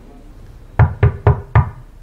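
Four quick knocks on a door, about a quarter second apart, starting a little under a second in.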